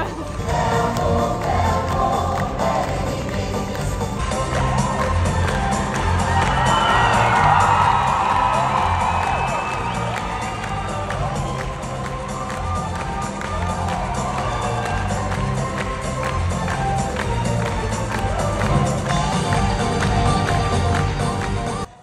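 Live musical finale heard from the audience: an amplified song with a steady beat and singing over the theatre's sound system, with the crowd cheering.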